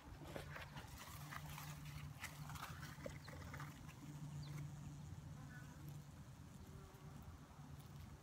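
Faint low hum of honeybees buzzing around the hive entrance, coming and going, with a few light clicks.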